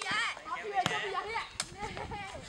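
Players calling out to each other during a game of sepak takraw, with two sharp slaps of the ball being kicked, a little under a second in and again about a second and a half in.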